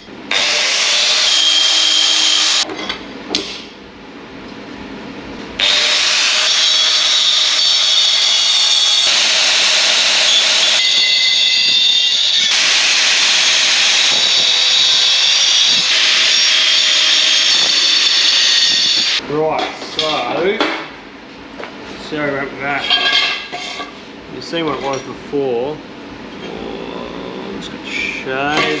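Angle grinder with a cutting disc slicing through aluminium square tube: a short cut of about two seconds, then, after a pause of about three seconds, a long steady cut that ends about two-thirds of the way through.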